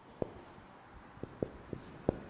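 Marker pen writing on a whiteboard: a few short, faint ticks as the tip strikes and lifts off the board, spread through the quiet.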